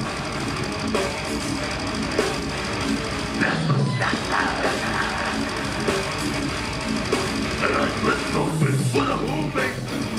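Deathcore band playing live at full volume: heavily distorted guitars, bass and pounding drums, with two brief breaks in the low end about four and nine seconds in.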